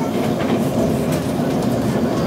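TEMU2000 Puyuma tilting electric train running at speed, heard from inside the carriage: a steady rumble of wheels on rail with scattered clicks of the wheels over rail joints.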